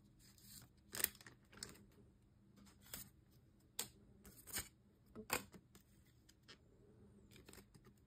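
Foil Pokémon booster-pack wrappers crinkling in the hand as the packs are handled, a scatter of short crackles with quiet between them.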